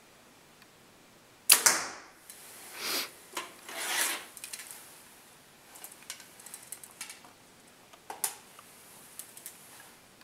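Compound bow shot about one and a half seconds in: two sharp cracks close together, the string's release and the arrow striking the target. Then rustling and a run of small clicks as the archer handles the bow and gear.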